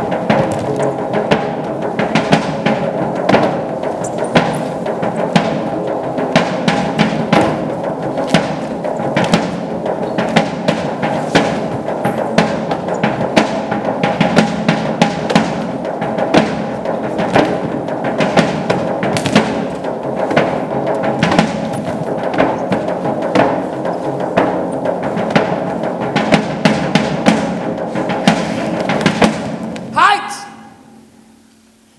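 Live percussion, repeated drum strikes, over sustained low string tones from cello and double bass, stopping abruptly at the very end.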